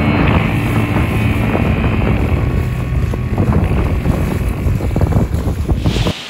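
Wind buffeting the microphone and choppy water splashing, recorded from a boat under way, with a low engine hum fading in the first seconds. It cuts off suddenly at the end.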